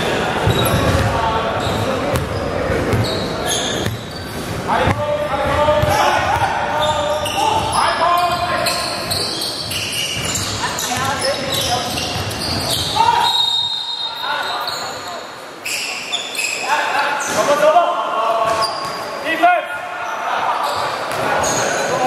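A basketball bouncing on a hardwood court, with scattered impacts, in a large indoor sports hall.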